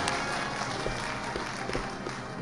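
Audience applauding, a steady patter of many hands clapping that slowly fades.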